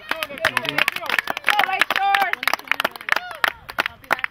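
Spectators clapping, with voices calling out over the applause.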